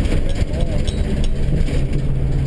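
Armored truck's engine running with a steady low drone and road rumble, heard from inside its crowded rear cabin.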